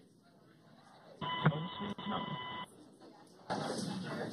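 Mission radio channel keying open: a steady beep-like tone over static for about a second and a half, cut off sharply, then the channel opens again with hiss near the end.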